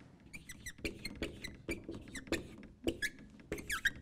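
Dry-wipe marker squeaking and tapping on a whiteboard as lines and numbers are written: many short squeaky strokes, some with a quick rise or fall in pitch.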